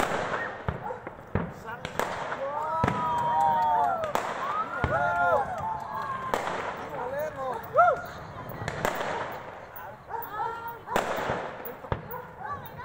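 Aerial fireworks bursting overhead, about eight sharp bangs spaced a second or two apart, with spectators' voices calling out between them.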